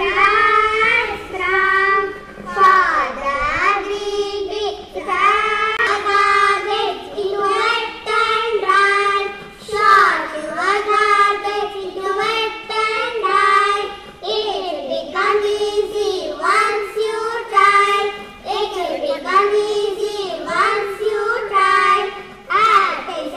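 A group of schoolgirls singing a song together in unison, in phrases of a second or two with short breaths between them.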